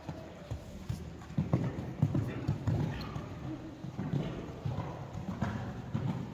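Friesian horse's hooves striking the sand footing of an indoor arena: a steady run of dull, muffled hoofbeats.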